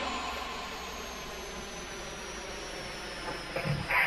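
A steady noisy wash with faint high tones slowly falling in pitch, gradually fading. Music begins right at the end.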